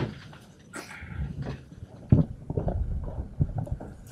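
Irregular knocks and bumps of something being handled at a podium with a microphone, the sharpest about two seconds in.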